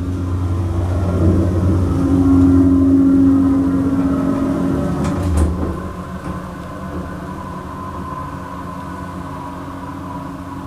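Montgomery dry-type hydraulic elevator carrying its car up one floor, heard from inside the cab: a steady hum of the pump and car in motion, loudest in the first half. About five seconds in, a short bump as the car levels and stops at the floor, after which a quieter steady hum remains.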